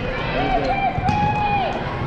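A person's voice calling out in one long, slightly wavering shout across a large sports hall during a volleyball rally, over a steady background of hall noise and a few short knocks.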